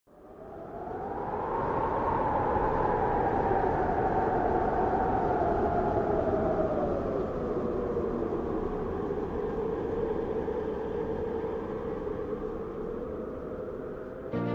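Wind blowing in a long steady gust, fading in at first. Its hollow pitch rises and then sinks slowly over several seconds.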